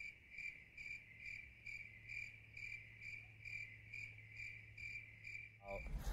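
Faint crickets chirping in an even rhythm, about two chirps a second, over a low steady hum. It is a comic 'crickets' effect marking a long, uneventful wait.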